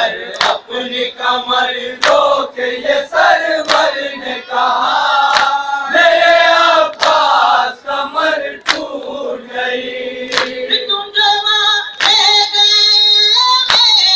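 A group of men chanting a nauha, a Shia mourning lament, with sharp hand slaps on the chest (matam) striking in time with it about every second or two.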